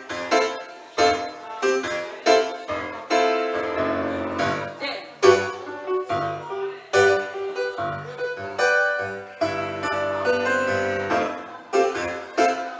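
Stage keyboard played with a piano sound: chords struck in a steady rhythm with low notes underneath, and longer held chords through the middle.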